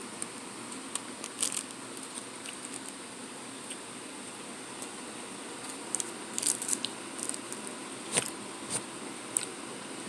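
A person chewing a snack cake close to the microphone: scattered soft mouth clicks, bunched about a second and a half in and again from about six seconds on, over a steady faint hiss.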